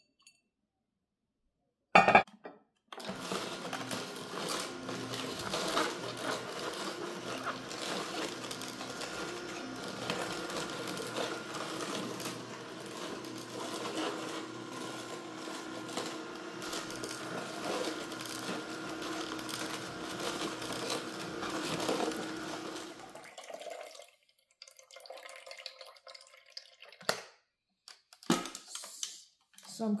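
Nama slow juicer running, its auger crushing celery: a steady motor hum with crunching that goes on for about twenty seconds and stops about three-quarters of the way through. It begins after a sharp knock about two seconds in.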